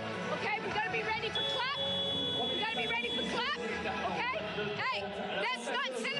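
A basketball coach's voice addressing her players in a timeout huddle, over arena crowd chatter and background music.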